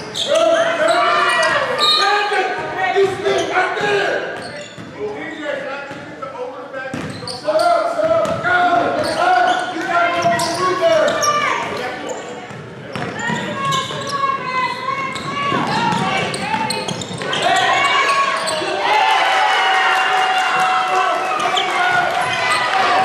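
Basketball game sounds in a large gym: a ball dribbled on the hardwood floor amid shouting voices from players, coaches and spectators.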